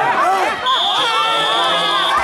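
Electronic match-timer buzzer sounding one steady high beep about a second and a half long, starting about half a second in, which marks the end of the bout. Shouting voices and a crowd sound under it.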